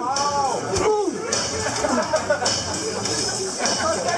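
Voices talking in a large hall, with a drawn-out rising-and-falling exclamation about half a second in.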